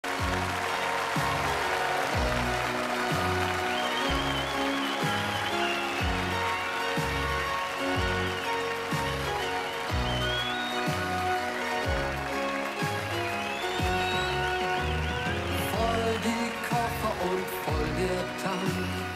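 Instrumental intro of a 1980s German pop song: a steady beat with a deep drum hit about once a second that drops in pitch, a bass line and chords, and a wavering high melody over the top.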